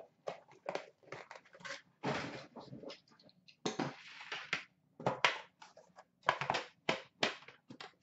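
Hands handling trading cards and metal card tins on a glass counter: a rapid run of irregular taps and clicks, with a couple of longer sliding rustles about two and four seconds in.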